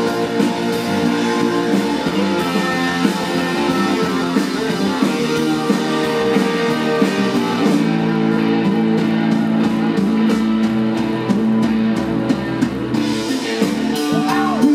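Live blues-rock band playing an instrumental passage: electric guitar, electric bass, drum kit and keyboard together. About eight seconds in the high end thins out for several seconds while the band keeps playing.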